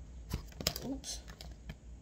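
A few light, separate clicks and taps of tarot cards being handled on a desk, with a sigh about a second in.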